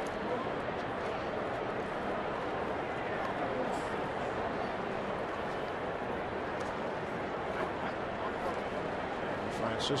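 Ballpark crowd chatter: a steady, even hum of many indistinct voices with no single sound standing out.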